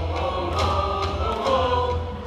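Baseball crowd singing a player's cheer song in unison over music, the melody stepping from note to note, with a few faint sharp beats.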